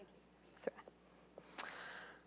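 Faint mouth sounds from a speaker between phrases: a few small lip clicks, then a short in-breath near the end.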